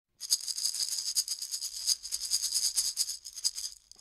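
Maracas shaken in a quick, even rattle that thins out near the end.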